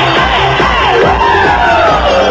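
Live pop band playing an up-tempo electronic dance track, with the crowd cheering and screaming over it; in the second half a high voice slides down in pitch.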